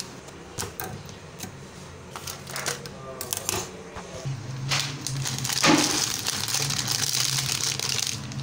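Plastic instant-noodle packet crinkling and clicking as it is handled. From about halfway a steady hiss with a low hum sets in and lasts to the end.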